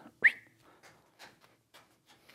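A brief high whistle-like chirp about a quarter second in. It is followed by faint soft taps of juggling balls landing in the hands, about four a second, as a three-ball pattern gets going.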